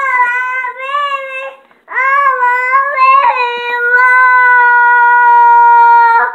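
A young child singing in a high voice: two short phrases with a brief pause, then a rising phrase into a long steady held note from about halfway in.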